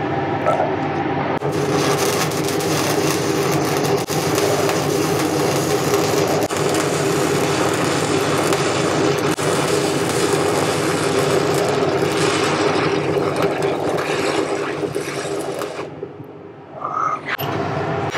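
Shielded metal arc (stick) welding with a 1/8-inch Eagle 606 hardfacing electrode at about 120 amps on mild steel: a loud, steady crackle of the arc that starts about a second in and stops near the end, when the arc is broken.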